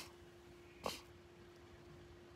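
A short breath right at the start and a brief sniff a little under a second in, over a faint steady hum; otherwise near silence in a pause between sentences.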